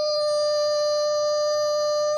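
A woman's voice, unaccompanied, holding one long high sung note at a steady pitch. It is the last note of the a cappella song.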